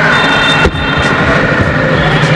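Bajaj Dominar 400 motorcycle engine running at low speed in busy street traffic, under dense road and street noise with a faint wavering high tone. A brief knock comes just over half a second in.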